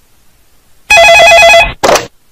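Telephone ringing: an electronic trilling ring that warbles rapidly between two pitches, starting about a second in and breaking off, then a brief second burst near the end.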